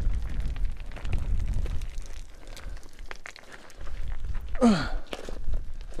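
Boots crunching and sliding on a steep slope of loose, stony glacial till, with gravel and small stones clicking and rattling over a low rumble. The crunching eases in the middle and picks up again. A short sigh with falling pitch comes about four and a half seconds in.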